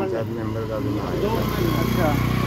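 A vehicle engine running nearby with an even low pulse, growing louder about a second in, under a man's voice.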